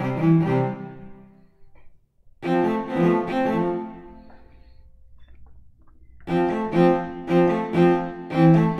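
Sampled Stradivari Cello from Native Instruments' Cremona Quartet library playing staccato notes. There is a short phrase at the start, another about two and a half seconds in, and then a run of short detached notes, two or three a second, from about six seconds in.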